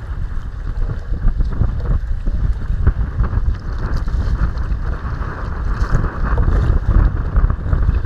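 Wind buffeting the microphone in a steady, gusting rumble, over choppy water lapping and splashing against a kayak's hull.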